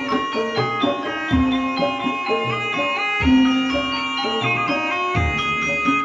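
Javanese gamelan music accompanying an ebeg hobby-horse dance: struck pitched percussion rings out overlapping notes over deep drum strokes that come roughly once a second.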